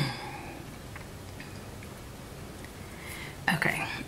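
Quiet room tone with a few faint, small ticks from sticker sheets being handled on a planner page; a word is spoken near the end.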